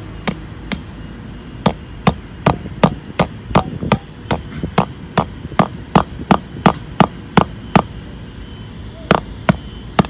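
Steel hammer head striking a 3/8-inch steel wedge anchor bolt, driving it down into a hole drilled in concrete. Sharp metallic blows at a steady pace of about two and a half a second, then a short pause and two more.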